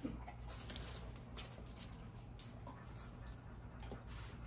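Faint, scattered clicks and small taps of dogs shifting about on a hard floor.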